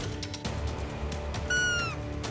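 Roe deer call blown once: a short, high squeaking note that slides slightly down in pitch, about one and a half seconds in. It is sounded to get a bedded roe buck to stand up.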